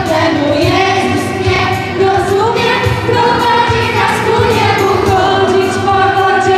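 Children's church choir singing a sustained melody into microphones over instrumental accompaniment, with a steady low beat.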